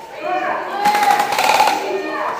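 An airsoft electric rifle firing a short full-auto burst of about a second, a fast, even run of shots, about halfway through, with voices around it.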